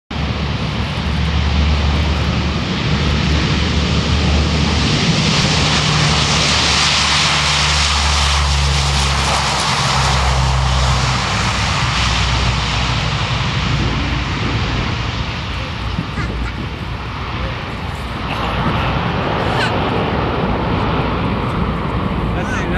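Lockheed C-130 Hercules's four Allison T56 turboprop engines at takeoff power as it rolls down the runway and lifts off: a loud, steady propeller drone with a low hum underneath, loudest as the plane passes, easing slightly a few seconds before the end.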